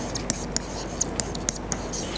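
Stylus writing by hand on an interactive whiteboard's surface: a run of short, sharp ticks and scratches, about three a second, as the letters are formed.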